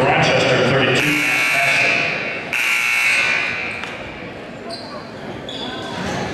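Gymnasium scoreboard horn sounding twice, the first blast about a second in and the second, slightly longer, a moment later, over a crowd cheering a made point and talking in the large hall.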